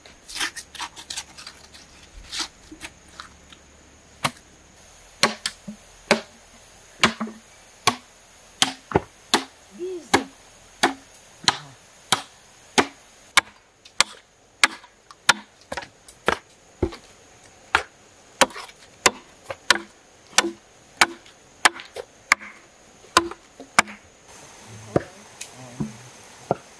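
A machete chopping into a green bamboo pole resting on a log: a long run of sharp, separate strikes, about three every two seconds.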